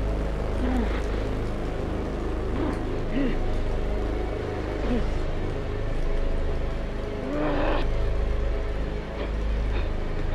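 Film soundtrack: a deep, steady rumbling drone under a handful of short, strained human groans. The longest and loudest groan comes about seven and a half seconds in.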